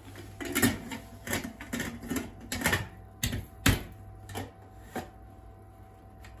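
Stainless-steel pressure cooker lid being set on and locked shut: a run of metal clicks and clanks, about a dozen, the loudest a little past halfway, dying away in the last second.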